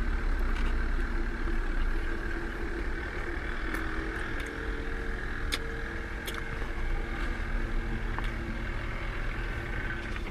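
Steady low hum of a car running, heard from inside the cabin, with a faint even hiss over it. A few small clicks of chewing come through around the middle.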